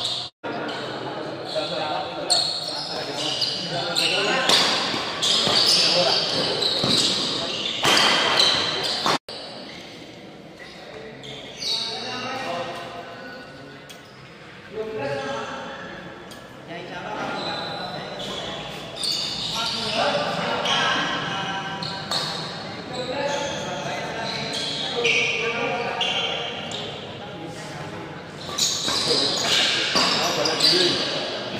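Badminton doubles rally in a large indoor hall: sharp racket strikes on the shuttlecock and players' footwork on the court, with players' voices echoing in the hall.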